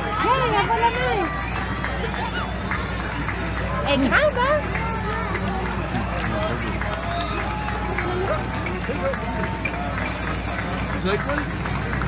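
Parade crowd chatter: many spectators' voices overlap with no single speaker, over a steady low rumble.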